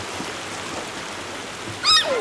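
Steady rush of river water, broken near the end by a child's short, high-pitched squeal.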